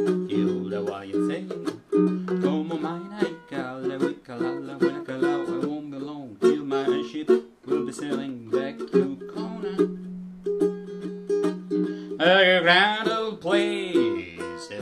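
APC baritone ukulele tuned in fifths, strummed in a steady rhythm with held chords and short melodic runs between them.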